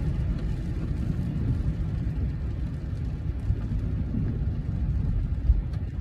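Steady low road and engine rumble inside a moving car's cabin, with a short knock near the end.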